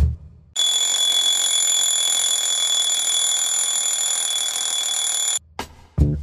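Electronic alarm sounding as one continuous high-pitched buzzing tone, starting about half a second in and cutting off suddenly near the end, loud enough to wake a sleeper.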